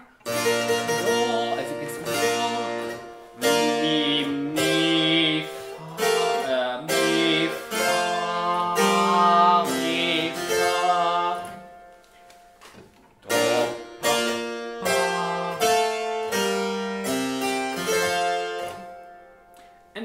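Two-manual harpsichord playing a figured-bass partimento exercise in plucked chords over a tied bass. The playing breaks off briefly about twelve seconds in, then resumes.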